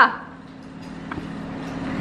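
A steady low background hum that slowly grows louder, with a faint click about a second in.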